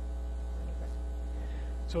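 Steady low electrical mains hum in the recording, unchanging throughout.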